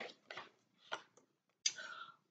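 Pages of a picture book being turned by hand: a few faint, short paper rustles and taps, with a louder one near the end.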